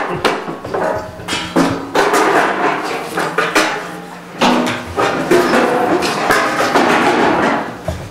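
Chairs being moved and stacked, knocking and clattering repeatedly.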